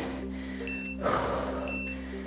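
Background music with steady low notes, and a short high beep once a second from a workout countdown timer, heard twice: about two-thirds of a second in and near the end.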